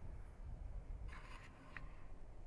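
Faint outdoor ambience with a steady low rumble, broken about a second in by a brief scratchy rustle and a faint tick.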